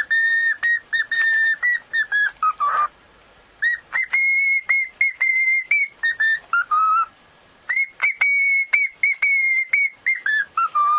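Cockatiel whistling: three quick phrases of short, clear notes mostly on one high pitch, with a few lower notes closing the first and second phrases and brief pauses between the phrases.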